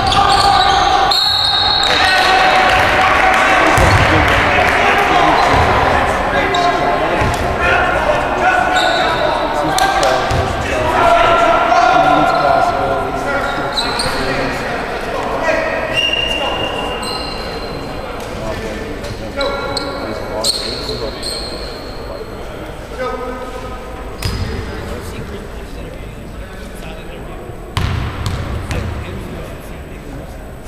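Basketball game sounds echoing in a gymnasium: a basketball bouncing on the hardwood floor, short high sneaker squeaks and indistinct voices of players and spectators. Near the end come a few low ball bounces.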